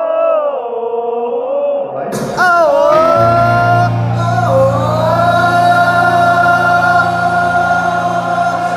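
Crowd and amplified male singer singing long, wordless harmony notes together, a sung part being taught to the audience. About two seconds in the sound gets louder as the voice through the PA comes in over a deep, steady low drone.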